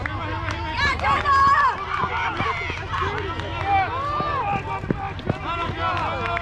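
Several high-pitched voices shouting and calling out over one another, loudest about a second in: spectators and players yelling during a softball play.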